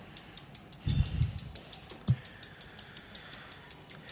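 Rear hub of a Trinx X5 mountain bike ticking rapidly as the rear wheel spins freely, its freewheel pawls clicking about seven times a second. A couple of low knocks come about one and two seconds in.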